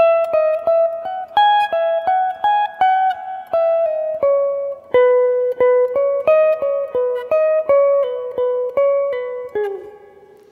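Electric guitar playing a single-note lead phrase high on the neck: a steady run of picked notes with pull-offs, stepping lower partway through. It ends with a slide down near the end.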